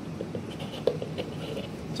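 Faint scraping and a few light clicks from a paint cup being handled and lifted off a wet canvas.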